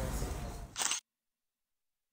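Low outdoor background, then a short, sharp smartphone camera shutter sound about three-quarters of a second in, after which the audio cuts to dead silence.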